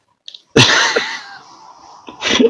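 A person sneezes once, loudly, about half a second in. The sneeze fades away over the next half second.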